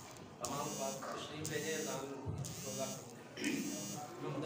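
Low murmur of several men talking quietly over one another, with a faint high-pitched electrical buzz.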